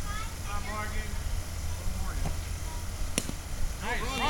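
A softball bat striking a pitched softball, heard as one sharp crack about three seconds in: a solid hit.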